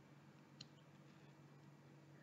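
Near silence: room tone with a faint steady low hum and one faint click a little after half a second in.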